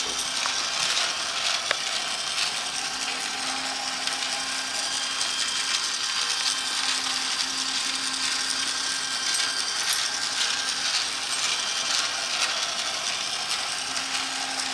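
Motorised Christmas village ornament running: its small electric motor and gears whir and rattle steadily as the toy train circles the track, with a faint low tone coming and going.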